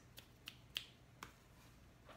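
Near silence with four faint, short clicks spread over the first second or so, of the kind made by handling a small wax melt.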